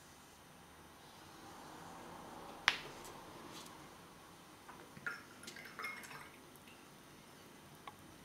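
Quiet sounds of watercolour painting: a faint swish, one sharp tap about a third of the way in, then a few light, drip-like taps and clicks as the brush is set down on the palette paper.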